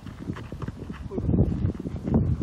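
Irregular footsteps and scuffs on a hard dirt ground, with a brief bit of voice about a second in.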